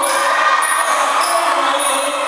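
Live music for a Thai likay folk-opera show, played through loudspeakers, with crowd noise mixed in.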